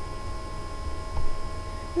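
Background noise of the recording between sung lines: a low hum with hiss and a faint steady high tone.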